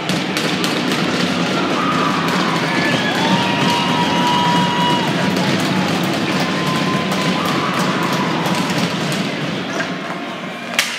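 Ice hockey rink din during play: steady crowd and bench noise with scattered clacks of sticks and puck, and a couple of long held tones rising over it in the middle.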